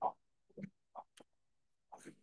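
Faint voice-over from a promotional video played back at very low volume: a few short, separate spoken syllables.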